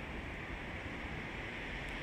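Steady, even background noise of a street, with no distinct events.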